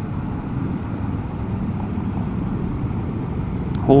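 Triumph Scrambler motorcycle under way on the road, heard from a helmet-mounted camera: a steady low rumble of engine and wind noise.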